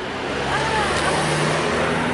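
A car driving past on the road, its engine and tyre noise swelling in the first half-second, then easing off.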